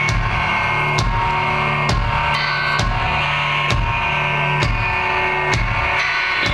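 Indie rock band playing live in an instrumental passage without vocals. Electric guitars and bass hold sustained notes over a drum kit keeping a steady beat, with a drum and cymbal hit about once a second.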